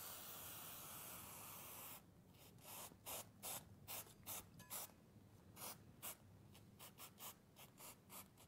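Faint hiss of an aerosol sealant remover sprayed onto a tin can for about two seconds. It is followed by a quick series of about a dozen short, separate noises.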